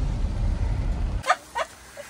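Pickup truck cab on a gravel road: a steady low rumble of engine and tyres that cuts off about a second in. It is followed by two brief high-pitched yelps.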